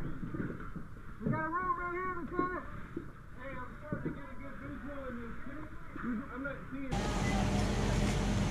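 Muffled, indistinct voices with the top of the sound cut off. About seven seconds in, the sound switches abruptly to a steady rushing noise with a low hum.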